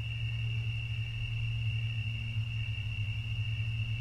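Pause between speech: a steady low hum with a thin, steady high-pitched tone above it, the background noise of the recording.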